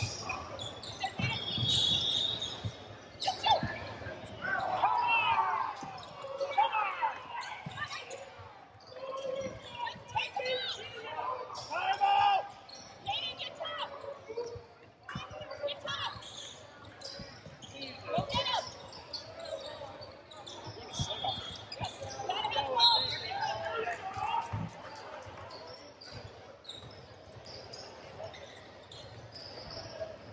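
Basketball bouncing on a hardwood gym floor, with players and spectators calling out over it.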